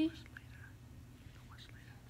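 A pause in speech: quiet room tone with a steady low hum and a few faint, brief soft sounds.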